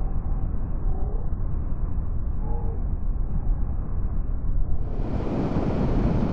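Steady wind rush and road noise of a motorcycle on the move, dull and muffled for the first few seconds, then brighter and fuller from about five seconds in.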